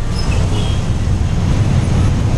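Road traffic noise from a congested street: a steady low rumble of many vehicle engines.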